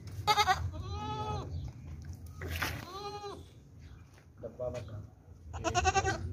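Nagra goat kids bleating: a quavering bleat right at the start runs into a long bleat that rises and falls in pitch, and a second long bleat follows about three seconds in. A short bleat and another quavering one come near the end.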